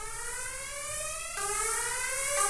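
EDM synth riser sample in C minor: a buzzy synth tone with hiss on top, gliding steadily upward in pitch. It drops back a step about two-thirds of the way through and climbs again.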